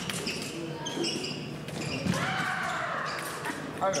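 Fencers' shoes squeaking and thudding on the piste, with a voice calling out.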